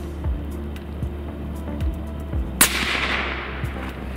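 A single rifle shot about two-thirds of the way in, sharp and followed by a fading echo. It is the shot that drops a muntjac deer at the feeder.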